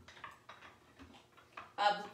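Faint, scattered light clicks and taps of a hand lemon squeezer and measuring cup being handled on a counter as lemon juice is measured out, with a spoken word right at the end.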